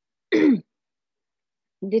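A person clearing their throat once, briefly, about a third of a second in, the sound falling in pitch.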